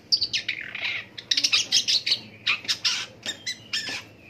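Long-tailed shrike (pentet) singing a loud, rapid run of sharp chattering notes, with a short break about a second in.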